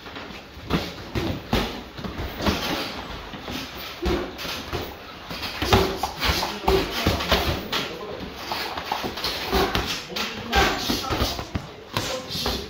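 Boxing gloves landing in a close-range sparring exchange: quick, irregular thuds of punches on gloves, arms and body, mixed with the boxers' sharp breaths as they punch.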